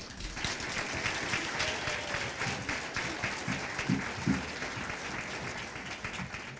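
Audience clapping after a children's song ends, starting at once and tapering off near the end.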